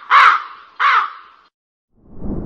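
Crow cawing sound effect: two harsh caws in the first second and a half, used as a comic awkward-silence gag.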